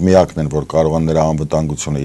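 Speech only: a man talking in Armenian at a steady pace.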